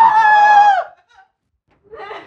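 A woman screaming in fright: one high, held scream lasting under a second.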